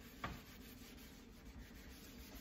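Faint rubbing of a scrubbing pad worked over a smooth glass-ceramic stove top with cleaning paste, with one light knock near the start.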